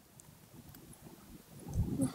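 Quiet lecture-hall room tone between phrases of speech, with a soft low sound near the end.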